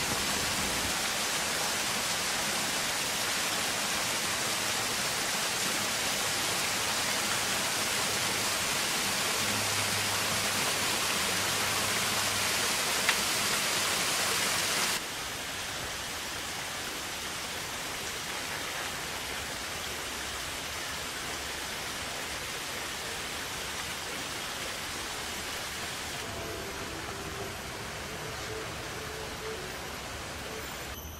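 Steady hiss of water falling into a pond from a small waterfall, dropping suddenly in level about halfway through.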